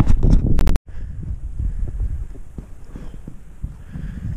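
A hiker's footsteps and scuffs on loose rock and boulders, a run of faint irregular knocks over a low wind rumble on the microphone. Just before a second in, the sound drops out completely for an instant where the recording is cut.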